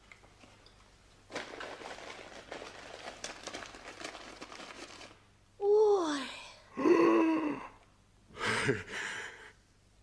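Paper wrapping rustling and crinkling for about four seconds as a package is opened. Then come three wordless vocal exclamations of astonishment, the first a falling "oh".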